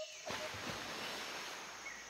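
Faint, steady background hiss with no distinct event.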